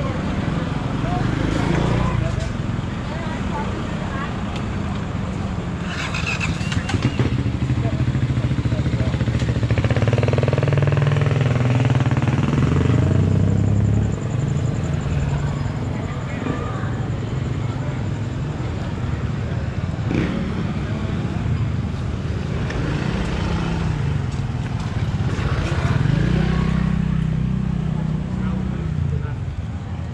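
Street traffic with motorbike engines passing close by, one over several seconds near the middle and another near the end, over a steady hum of traffic and indistinct voices.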